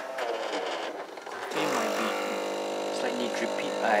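A sharp click near the start, then about a second and a half in an automatic bean-to-cup coffee machine starts working, its motor running with a steady hum.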